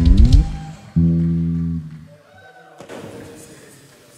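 Live band with bass guitar ending a song: a quick downward slide, then a final held chord with a heavy low end from about a second in, cut off just before two seconds. Only faint hall sound follows.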